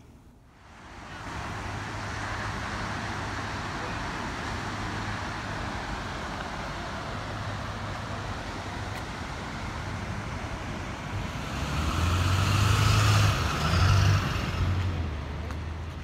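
Steady rushing outdoor noise with a low rumble underneath, swelling louder about twelve seconds in and easing off near the end.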